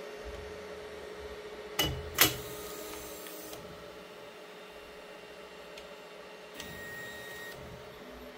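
Anycubic Kobra 3 3D printer's motors running as the toolhead travels while the printer prepares to load filament: a steady hum, with two sharp clicks about two seconds in and a fainter higher whine near the end.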